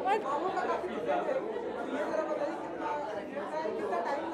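Indistinct voices of people talking off-microphone, quieter than the main speaker, as background chatter in a room.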